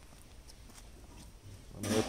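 Faint outdoor background with a few soft ticks, then a loud voice starts near the end.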